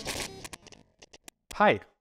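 Glitchy electronic logo sting: a dense, buzzing sound effect dies away about half a second in, followed by a scatter of short, sharp digital clicks.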